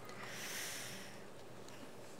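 A faint breath drawn in close to a pulpit microphone during a pause in preaching, a soft hiss lasting about a second.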